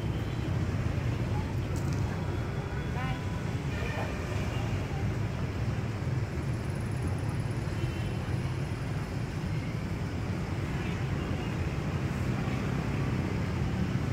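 Busy city street ambience: a steady low rumble of traffic with scattered voices of passers-by.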